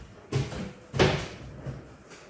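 Low cabinet being opened and shut by hand, with two sharp knocks, the second and louder about a second in, and a few lighter knocks between them.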